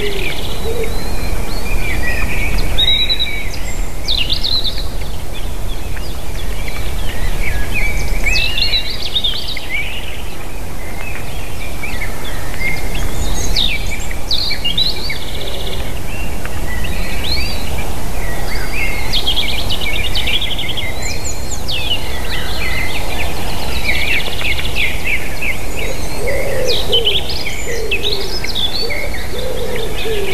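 Wild songbirds chirping and singing in the surrounding forest, many short calls and trills overlapping throughout. Near the end a lower, repeated cooing or hooting call joins in, over a steady low rumble.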